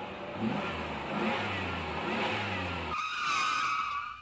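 A motor vehicle engine running and revving, its pitch rising several times. About three seconds in the engine sound drops away and a steady high tone takes over.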